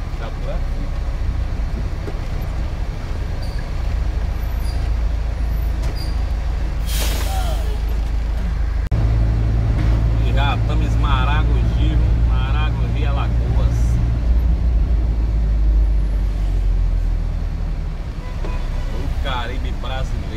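Engine of a heavy vehicle running as it drives, heard from inside the cab as a steady low rumble. A short hiss about seven seconds in, like an air brake letting off. The rumble steps up louder about nine seconds in.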